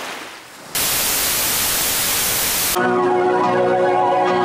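Television static hiss, loud and even, cutting in suddenly about a second in and stopping sharply two seconds later. Music with steady held notes then begins, as the set tunes in.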